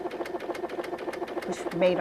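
Brother DreamWeaver XE sewing machine stitching out a decorative pattern: a steady motor hum with a rapid, even ticking of the needle.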